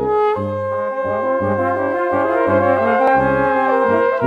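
Live brass quintet (trumpets, French horn, trombone and tuba) playing together: held chords in the upper voices over a low bass line of short, separate notes.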